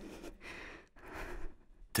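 A person breathing softly close to a studio microphone: two short breaths.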